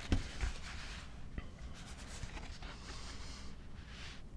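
Paper rustling as sheets are shuffled and turned at a lectern, with a couple of soft knocks near the start.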